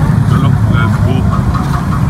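Street traffic noise with a vehicle engine running steadily close by, a constant low hum under a man's brief speech.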